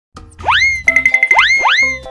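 Playful children's music with cartoon 'boing' sound effects: three quick rising swoops, with a fast warbling tone between the first and second.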